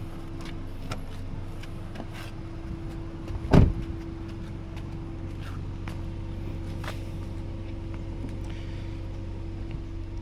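Handling noises as a Toyota Camry's trunk is released and opened: a few light clicks and one loud thump about three and a half seconds in, over a steady low hum.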